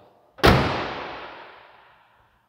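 Pickup tailgate of a 2022 Ram 2500 Power Wagon slammed shut once, about half a second in, shutting solidly with a single bang that echoes and dies away over about a second and a half.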